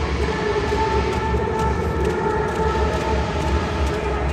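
Stadium sound system playing live music, recorded from the stands: a heavy pulsing bass under steady held tones, dense and unbroken.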